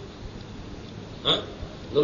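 A pause in a man's speech with faint background hiss, broken by one brief vocal sound a little over a second in, before he starts speaking again at the very end.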